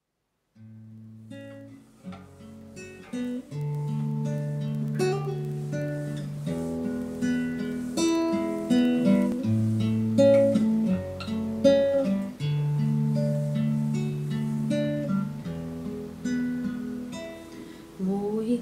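Nylon-string classical guitar playing the slow instrumental introduction to a lullaby. It comes in quietly about half a second in and grows louder a few seconds later.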